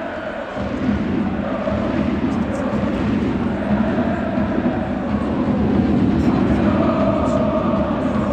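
Football crowd chanting in a stadium: many voices singing together in a sustained, wavering chant.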